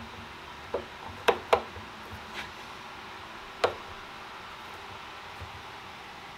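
A screwdriver clicking and knocking against a screw set in the wooden rail of a cedar chest: about five sharp clicks in the first four seconds, the loudest a close pair about a second and a half in, over a faint steady hiss. The bit keeps slipping out of the screw head.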